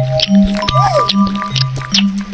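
Background music with a bouncing two-note bassline, over close-miked wet slurping and chewing clicks as a spicy gluten strip (latiao) is sucked in and eaten. A short rising-and-falling tone sounds just before a second in.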